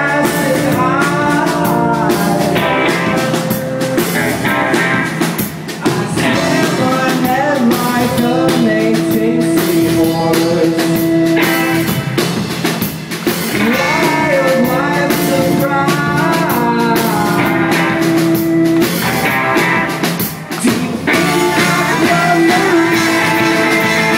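Live rock band playing a song on electric guitars, electric bass and drum kit, loud and continuous, with long held notes in the middle and near the end.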